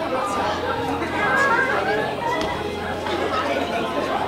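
Overlapping chatter of many voices in a large, busy room, with a steady low hum underneath.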